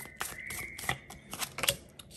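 Tarot cards being shuffled and handled, a quick irregular run of sharp card clicks and flicks, with a card slid down onto the table near the end.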